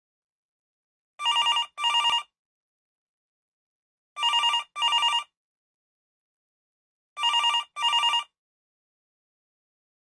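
Phone ringing in a classic double-ring pattern: three pairs of rings about three seconds apart.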